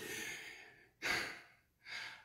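A man breathing audibly between phrases of preaching: three short, breathy breaths without voice, the first the longest.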